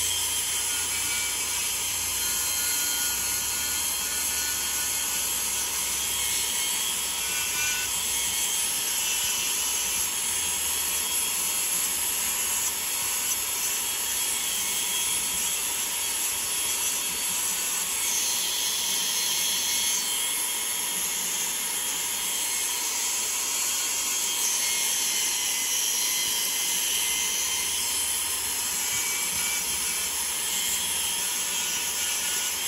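High-speed rotary carving tool running steadily as it grinds walrus ivory, a continuous high-pitched whine with grinding noise.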